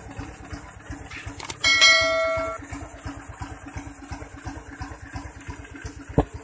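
Honda Wave 110i's single-cylinder four-stroke engine idling with an even beat. About one and a half seconds in, a steady ringing tone sounds over it for about a second.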